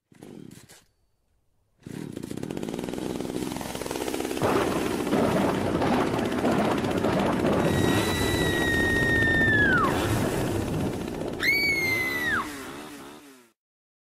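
Horror channel intro sound effect: a loud, harsh, noisy rumble builds for about ten seconds. A high held tone rides over it and drops away about two-thirds of the way through, and a shorter high tone rises and falls near the end before everything fades out.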